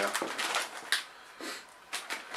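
Foil-lined plastic crisp packet (a bag of Lay's) crinkling as it is handled and turned over: a run of short rustles with one sharp crackle about a second in, then a quieter stretch.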